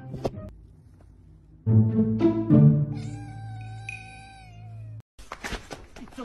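A domestic cat gives one long, drawn-out meow starting about three seconds in, over background music.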